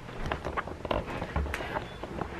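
Footsteps with handheld-camera handling noise: a few soft thumps and scattered clicks and rustles.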